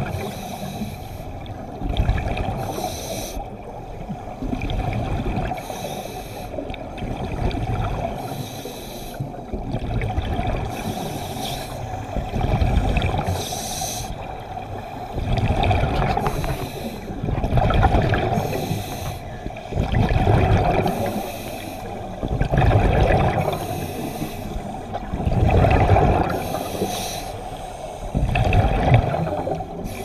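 Underwater breathing through a scuba regulator: a hissing inhalation, then a low bubbling rush of exhaled air, repeating every two to three seconds.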